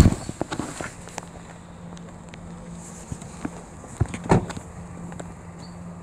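Handling knocks and footsteps of someone climbing out of a car and walking beside it, with a sharp knock at the start and two heavy thumps about four seconds in, over a steady low hum.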